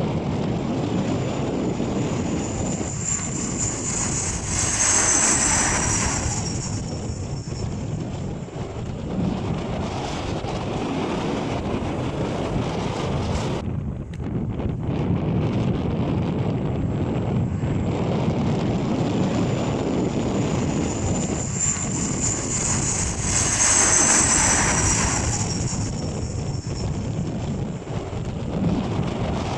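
Bombardier Dash 8 turboprop engines and propellers running as the airliner passes low on approach and landing, with a high whine that swells and falls in pitch as it goes by. This happens twice, with a sudden break between the two passes, over wind on the microphone.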